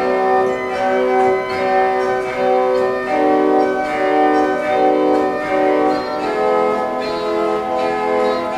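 Baroque pipe organ playing held chords in the second church mode, the chords changing about once a second on a full registration with many high partials.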